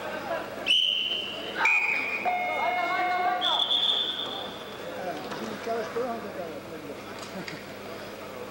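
Three long whistle blasts in quick succession, each at a different pitch, the last one the highest, over crowd chatter and shouting.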